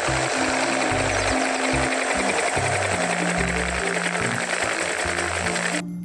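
Helicopter in flight: a dense, rapid, even chopping of rotor and engine noise, which cuts off suddenly near the end. Background music with a low bass line plays underneath.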